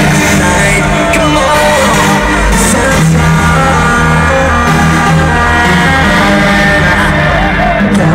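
Loud hardstyle dance music from a festival sound system, with sustained synth chords over a heavy, steady bass.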